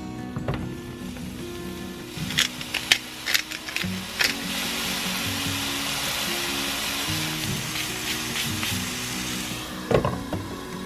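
Background music over lion's mane mushroom pieces and garlic frying in olive oil in a pan. A few clicks and taps as the pieces go in, then a steady sizzle from about four seconds in that dies down near the end.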